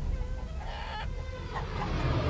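Domestic hens clucking, a few short calls in the first half, over a low steady rumble.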